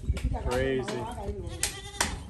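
Goats bleating, with one high call near the end.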